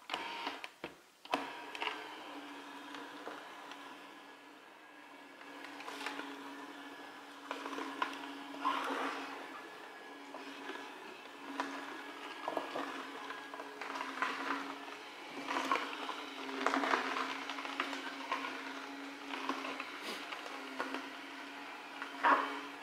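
Slow juicer running steadily with a low motor hum, its auger crushing pieces of produce fed into it, which gives irregular crunching surges every few seconds.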